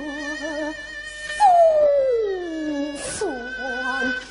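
Female Yue opera (Shaoxing opera) singer singing a line with wide vibrato, then a long phrase sliding down in pitch about a second and a half in, over steady instrumental accompaniment. Two brief hissy bursts come about one and three seconds in.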